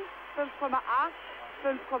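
Speech only: a commentator reading out figure-skating marks in German, two short number calls with a pause between them, on a narrow-band old broadcast soundtrack.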